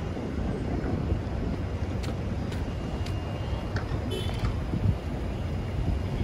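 City street traffic: a steady low rumble of cars, with wind buffeting the microphone. A few faint clicks and a brief faint high tone come partway through.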